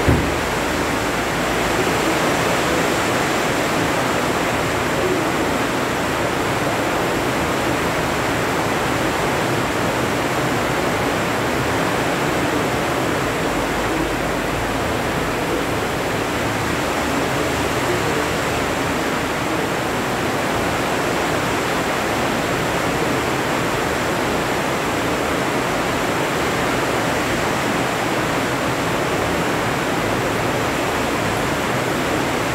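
Loud, steady rushing noise like static hiss, spread evenly from low to high pitches, with a short click at the very start.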